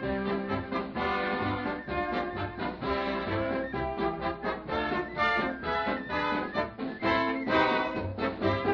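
Swing-style dance band music with brass over a steady pulsing bass, in the narrow, dulled sound of a 1930s radio recording.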